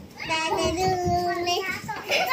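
A young child's voice holding one long, steady sung note for about a second and a half.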